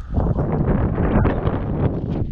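Wind blowing across the microphone: a steady, loud noise heaviest in the low end.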